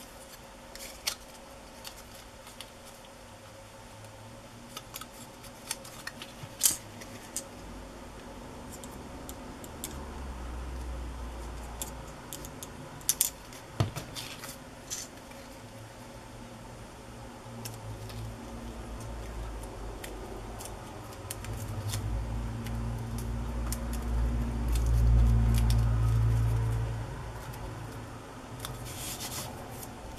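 Small pieces of paper and cardstock being handled and pressed together by hand, giving light rustles and scattered small clicks. A low rumble swells twice, the second time louder.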